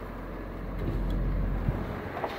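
Truck power window motor running as the glass travels, a low hum that swells and then stops with a short thump at about one and a half seconds in, over the steady low idle of the engine.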